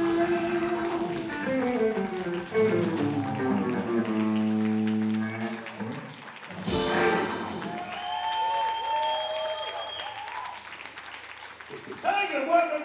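Electric blues band of guitars, bass, electric piano and drums playing the closing phrase of a song, holding a final chord that stops about six seconds in. A last drum-and-cymbal hit follows, then audience applause and cheering.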